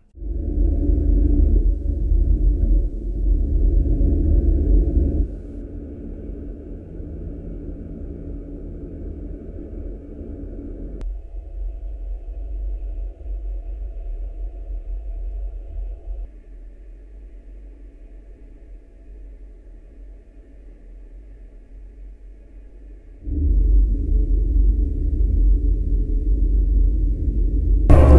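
Simulated road noise, a steady low rumble, as heard in an active-noise-cancellation test of Sony over-ear headphones. It drops in steps about five, eleven and sixteen seconds in as the noise cancelling takes more of it out, then comes back at full level near the end.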